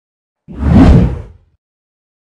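A single whoosh sound effect for a logo reveal, starting about half a second in: a deep, rumbling swell of noise that rises and fades away within about a second.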